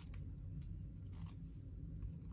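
A few faint, soft rustles of a thin oil-blotting paper pressed against the cheek and peeled away from the skin, over a low steady hum.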